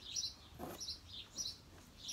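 A small bird chirping in the background, a short high chirp repeated about every half second.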